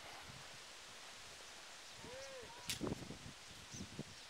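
Footsteps on a dirt path over faint outdoor hiss. About halfway through comes a short rising-and-falling call, followed by a few brief voice-like sounds and a sharp click.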